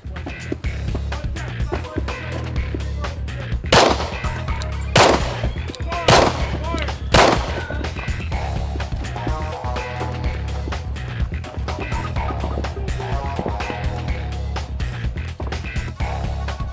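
Four pistol shots of .45 ACP 230-grain FMJ, about a second apart, each with a short ring after it. Background music with a steady beat plays underneath.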